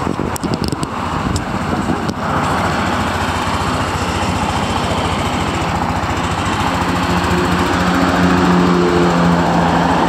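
Yamaha NMAX 155 scooter's single-cylinder four-stroke engine idling steadily, with a few light clicks in the first two seconds. A steady low hum joins in over the idle about two-thirds of the way through.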